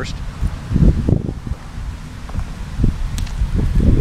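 Wind buffeting the microphone in irregular low gusts, with rustling handling noise as the camera is moved.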